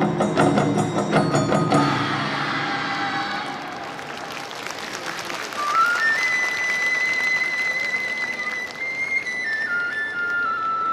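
Festival hayashi drums beat out a rhythm that stops about two seconds in, followed by applause, then a Japanese bamboo flute enters, climbing in steps to a long high held note and stepping down near the end.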